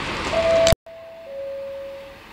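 Brakes squealing on a Class 142 Pacer diesel unit: a steady high tone that steps down to a lower pitch about a second in, over a rumble of train noise. The sound drops out completely for an instant just before the pitch change.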